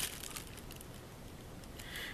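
Faint crinkling of clear plastic bags and bubble wrap being handled, a few light crackles mostly in the first half second, then a soft steady hiss.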